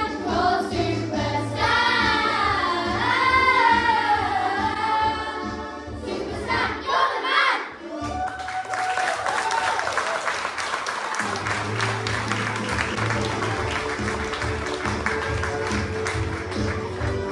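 A group of children singing together over a backing track, ending the song with a held final note about seven seconds in. Audience applause follows, with backing music starting up again under it near the end.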